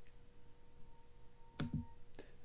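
Quiet room tone with a faint steady tone, broken by a single brief click about one and a half seconds in.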